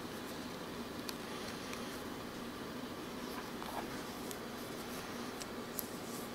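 Quiet room tone, a steady faint hiss, with a few small clicks spread through it.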